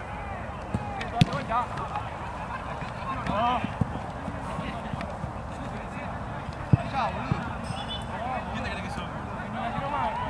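Footballers shouting and calling to each other across an outdoor pitch, with sharp thuds of the football being kicked, the two loudest about a second in and just under seven seconds in.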